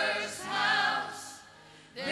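A small group of men's and women's voices singing a gospel song in harmony through microphones. The line ends about a second in and the voices fade to a short pause before the next phrase.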